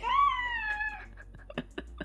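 A toddler's high-pitched, drawn-out squeal lasting about a second, sliding slightly down in pitch, followed by a few light clicks.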